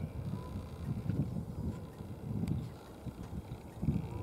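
Low, uneven rumble of wind buffeting the camera's microphone, with a few faint bumps from the hand-held camera.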